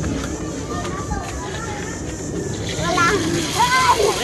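Chatter of children's voices in the background, growing into louder shouts or laughter near the end.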